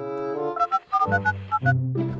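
Phone keypad tones as a number is dialled: a quick run of about six short beeps starting about half a second in, over comic background music with brass.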